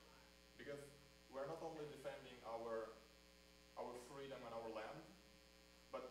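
A man's faint speech in short phrases over a steady electrical hum.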